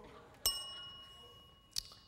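A desk service bell struck once about half a second in, a clear high ding that rings on and fades over nearly two seconds, with a light click near the end: a contestant ringing in to answer a quiz question.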